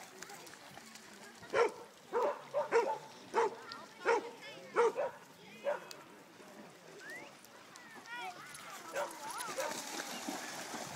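A dog barking: about eight short, sharp barks in quick succession over some four seconds, then stopping.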